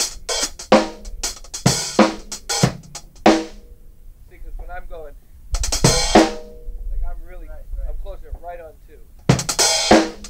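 Drum kit played with sticks: snare and bass drum strokes under hi-hats that open and close in time with the beat, showing how the hi-hat's closing is made part of the rhythm. The playing stops after about three and a half seconds. A faint voice and a single loud drum-and-cymbal hit about six seconds in follow, and the kit comes back in with cymbal crashes near the end.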